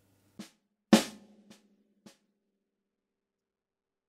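Four snare drum strokes played right, left, right, right, a paradiddle fragment, evenly spaced about half a second apart. The second stroke, the left hand, is accented and rings briefly. The other three are played quietly, the first note deliberately not accented.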